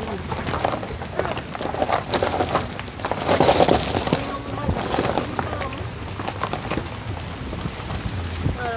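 Car being driven slowly over a rough stony lane, heard inside: irregular rattles and knocks from the bumpy road, with a louder rushing noise a little past the middle and faint voices.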